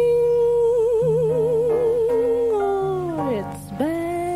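A female jazz vocalist holds one long note with wide vibrato over piano and bass accompaniment, then slides down in pitch about three seconds in before starting a new note near the end.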